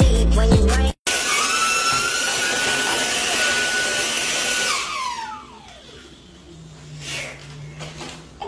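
A short burst of music, then a cordless stick vacuum cleaner running with a steady high whine. About five seconds in it is switched off, and its pitch falls as the motor spins down.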